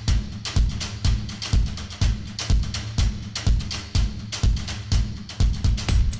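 Background music with a steady drum-kit beat: a kick drum about twice a second, lighter hits in between, and a steady bass line.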